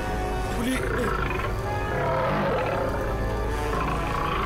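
A tiger roaring over dramatic background music.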